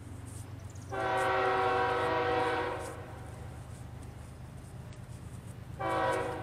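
Diesel locomotive's multi-chime air horn sounding a long blast of about two seconds, with a second blast starting right at the end: the horn signal for a grade crossing as the train approaches. A steady low rumble from the oncoming train runs underneath.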